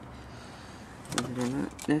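Faint steady background noise for about a second, then a man's voice speaking a short phrase; speech resumes near the end.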